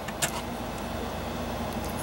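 Steady low background noise with a faint hum, and two light clicks near the start.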